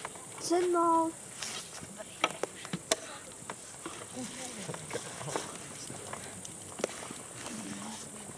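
A person's voice gives one short, level, held tone about half a second in, the loudest sound here. After it come faint murmured voices and a few light, sharp clicks.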